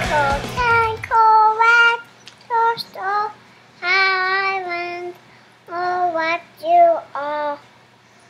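A toddler girl singing a string of held notes in a high voice, with short pauses between them. Rock music stops about a second in.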